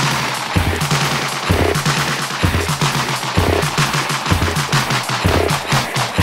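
Live electronic dance music played on Roland AIRA hardware. A deep bass hit repeats about once a second under rapid, rattling percussion strikes.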